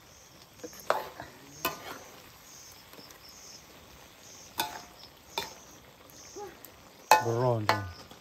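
Metal ladle stirring and scraping meat in a wok over a faint frying sizzle, with a few sharp clicks of the ladle striking the pan.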